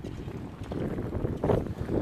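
Wind noise on the microphone, with a few footsteps on cobblestone paving; the loudest thump comes about one and a half seconds in.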